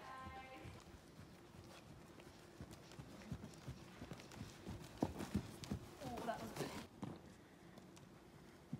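Faint, irregular hoofbeats of a horse trotting on the soft sand footing of an indoor riding arena, with a few louder strikes about five seconds in.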